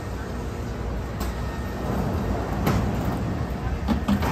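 Taipei Metro C301 train starting to pull out of the platform: a steady low rumble that grows louder about two seconds in, with a few sharp clicks and knocks.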